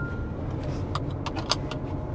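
Low, steady running of the Fiat Ducato's 2.3-litre Multijet four-cylinder turbodiesel, heard from inside the cab at low speed. A string of light clicks and rattles runs through it, and the last tone of the seatbelt warning chime ends just at the start.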